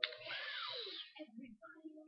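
A breathy exhale lasting about a second, starting with a small click, then faint voices in the background.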